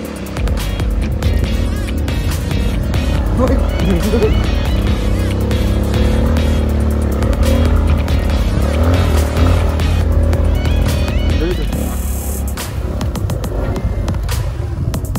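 Motorcycle engine running while riding along a rough grassy track, its pitch rising and falling a few times, with music playing along with it.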